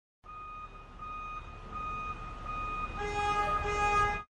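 Forklift sound effect: a low rumble with a steady high tone broken by short gaps, growing louder. About three seconds in, a bright chord of several tones comes in on top.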